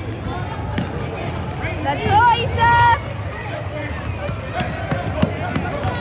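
Basketball game in a gym: a ball bouncing and occasional sharp knocks over a steady hum of crowd noise, with two loud shouts from spectators about two seconds in, the second a held call.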